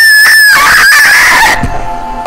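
A very loud, high-pitched vocal shriek, held for about a second and a half and then tailing off.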